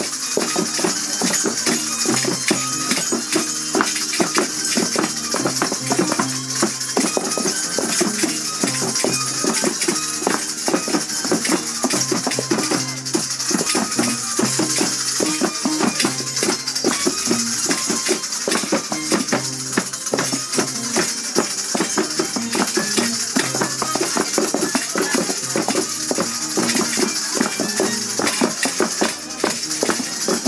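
Andean festival music for a negritos dance, with a dense, continuous rattling and jingling of shaken rattles or bells running through it.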